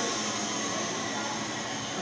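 Steady mechanical hum with a high hiss, unchanging throughout.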